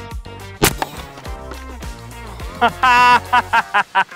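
A single sharp shot from an Umarex Hammer .50-caliber PCP air rifle about half a second in. Near the end a man laughs in a quick run of loud bursts.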